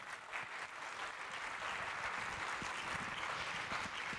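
Audience applauding, swelling over the first moment and then steady.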